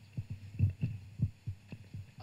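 Handling noise from a handheld microphone as it is passed between presenters: a quick, irregular run of low thumps and knocks, about eight in two seconds.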